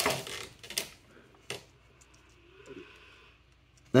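Small plastic action figure being handled: a couple of short clicks in the first two seconds, then a few faint ticks.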